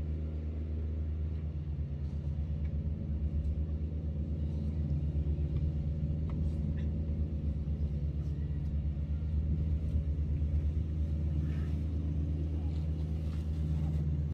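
A steady low mechanical rumble from a running engine, even and unbroken, with a fine pulsing texture.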